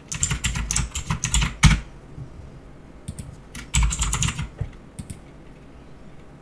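Typing on a computer keyboard in two quick runs of keystrokes, the first ending with one louder key press, then a few last keystrokes near the end.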